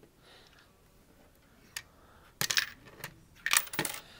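A coin released by a Lego candy machine's push lever drops out and clatters onto a wooden table. There are a couple of single clicks, then two short bursts of rattling impacts, the louder one near the end.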